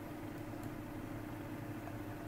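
A steady, quiet background hum with a faint held tone: room noise during a pause in speech.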